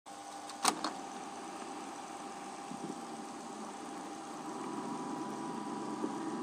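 Grundig reel-to-reel tape recorder started: a mechanical clunk as the play key engages, then the tape transport running with a steady tape hiss and a faint hum before the recording's sound begins.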